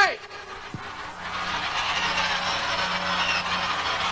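Concert audience cheering and screaming, swelling about a second in and then holding steady, with high shrill screams rising over the roar.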